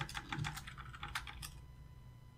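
Typing on a computer keyboard: a quick run of about a dozen key clicks that stops about a second and a half in.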